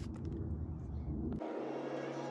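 Low, even outdoor background rumble that cuts off abruptly about one and a half seconds in, replaced by background music with a steady low note and a few higher notes.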